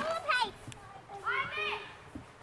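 High-pitched voices of young children playing: two short calls, one at the start and one just past the middle, rising and falling in pitch.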